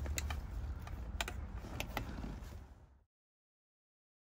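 Screwdriver working the screws of a plastic cup holder in a car's centre console: scattered small clicks and scrapes over a low hum. The sound cuts off suddenly about three seconds in.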